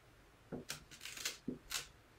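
Dry-erase marker writing on a whiteboard: about five short, faint scratchy strokes as letters are drawn.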